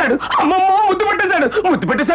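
A loud, high-pitched voice, its pitch sliding and wavering with a trembling stretch about half a second in.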